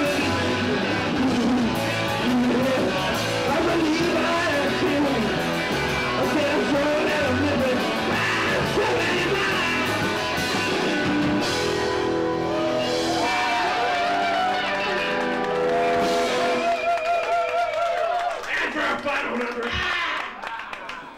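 Garage rock band playing live: electric guitars and drum kit with singing. Near the end the song winds down, with a wavering held note, and stops.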